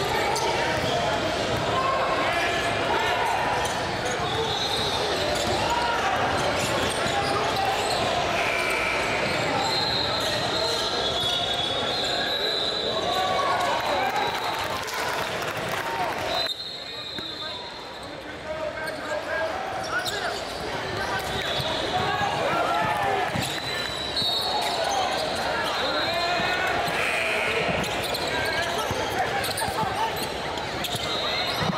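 Basketball game sounds in a large gym: a basketball bouncing on the hardwood court, short high sneaker squeaks, and the overlapping chatter of players and spectators. The sound dips briefly about halfway through.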